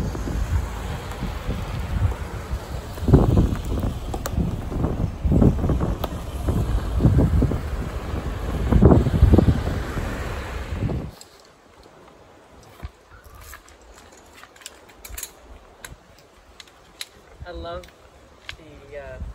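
Gusty wind rumbling on the microphone in irregular surges, which cuts off suddenly about eleven seconds in. After it come quiet outdoor surroundings with scattered light clicks as the poles of folding camp chairs are snapped together.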